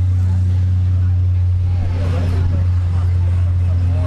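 A loud, steady low mechanical drone, with faint voices in the background around the middle.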